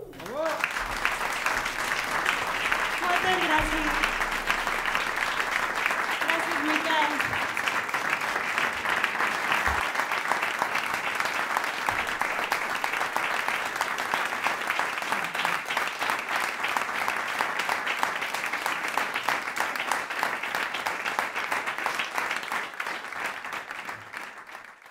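An audience applauding steadily after the song ends, with a few voices calling out in the first few seconds. The applause thins out near the end.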